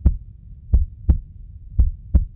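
Heartbeat sound effect: deep double thumps, lub-dub, repeating about once a second.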